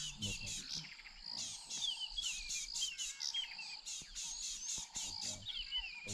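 Wild birds calling, with many short falling chirps overlapping a high, evenly pulsing trill that repeats about four to five times a second. The trill pauses briefly about a second in.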